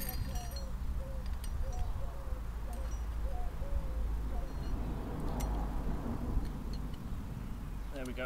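Scattered light clicks and knocks of steel wheelie-bar parts and nylon rollers being handled and fitted together, over a steady low rumble.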